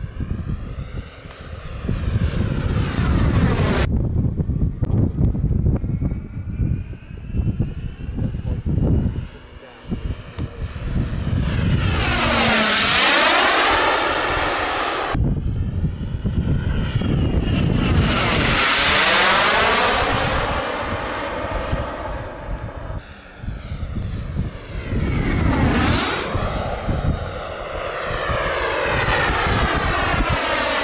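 Turbine-powered model jet flying repeated passes, its high turbine whine swelling and falling in pitch as it goes by. It comes closest three times, about 13, 19 and 26 seconds in.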